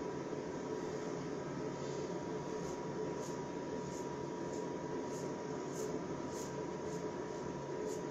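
Ikon open-comb safety razor with a fresh Lord blade scraping stubble in short, high-pitched strokes, about two a second, starting a couple of seconds in, over a steady background hiss and hum.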